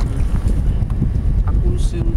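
Wind buffeting the microphone: a loud, steady low rumble, with faint voices near the end.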